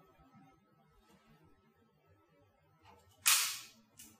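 A single shot from a training pistol about three seconds in, a sharp crack with a short hissing tail: the calibration shot fired at the SCATT optical sensor, which registers it as successful.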